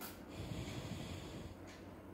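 A short, low breath or snort close to the microphone, after a brief click right at the start.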